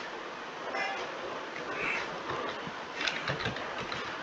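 Computer keyboard keys tapped a few times near the end, faint over a steady background hiss.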